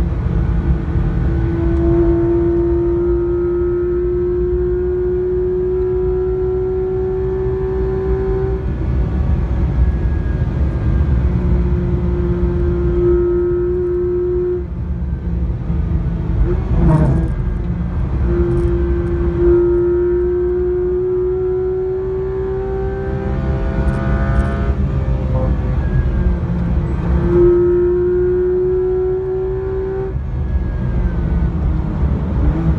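Porsche 991 GT3 RS's 4.0-litre naturally aspirated flat-six howling at high revs under full throttle, heard from inside the cabin with heavy road and tyre rumble. Its pitch climbs slowly and dips back several times, and a few brief clicks come near the middle.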